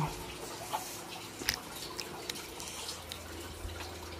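A steady low hum with a few faint, short clicks and ticks scattered through it, in keeping with a handheld phone being moved in a quiet room.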